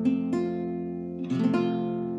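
Acoustic guitar with an F major barre chord fretted at the first fret, its strings plucked one at a time. A few separate notes ring out clearly and sustain, showing the barre is pressed down cleanly.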